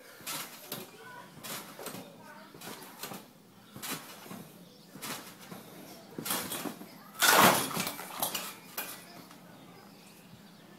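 Trampoline mat and steel springs creaking and jangling with each bounce, about once a second, then a louder landing just after seven seconds as the jumper comes down from a flip.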